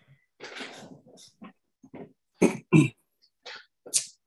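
A man clearing his throat in two short, harsh bursts about two and a half seconds in, after an audible breath.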